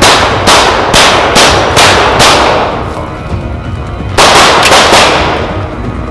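Handgun shots in quick succession, about two a second for the first two seconds, then one more after a pause of about two seconds, each with a long echoing tail.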